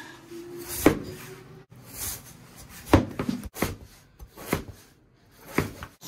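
Cleaver cutting a peeled potato into thick pieces, the blade knocking on a wooden cutting board in about six irregularly spaced chops.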